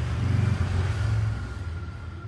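A passing motor vehicle's engine: a low rumble that swells over the first second and then fades away, with a faint thin whine as it goes.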